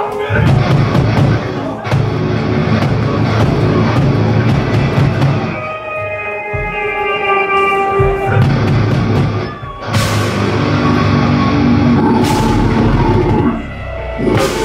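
A heavy metal band playing live on distorted electric guitars, bass and drums. About halfway through the heavy riffing gives way to held guitar notes, then cuts out briefly twice before kicking back in.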